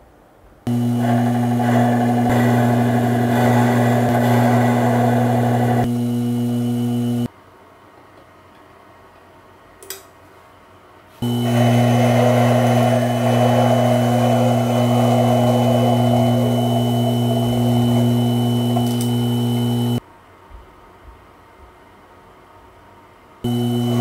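Benchtop metal lathe switched on and off three times, its motor and drive running with a steady hum and whine each time. The tool cutting a small metal shaft adds a rough scraping hiss during the first two runs. A short click comes in the first pause.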